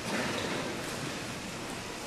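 Steady, even hiss of a church's room noise with faint rustling and shuffling from the seated congregation.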